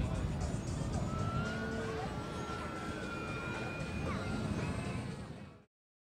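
Public-address music mixed with the drone of a radio-control model airplane flying overhead, with sliding pitched tones. The sound cuts off suddenly to dead silence near the end, where the audio track has been muted.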